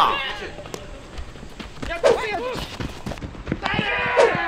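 Outdoor baseball field ambience with players' voices calling out across the field, a louder shout near the end, and scattered faint clicks and knocks.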